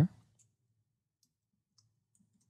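A few faint, brief computer clicks over near silence, while the first letter is being typed into a slide title.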